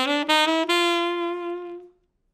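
Tenor saxophone playing a quick ascending scale run, tonguing only the downbeats. The line ends on a held top note that fades out near the end.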